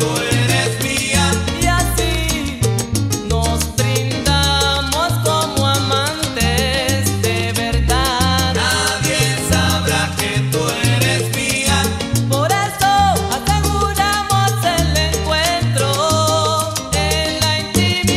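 Salsa band recording in an instrumental passage with no lead vocal: a repeating bass line under dense percussion, with melodic lines above.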